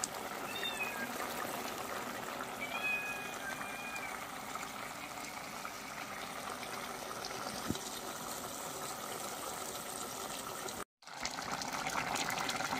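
A pot of meat curry simmering on a gas stove: a steady bubbling hiss with a faint crackle. Two short, high calls come over it about half a second and three seconds in, and the sound cuts out for a moment near the end.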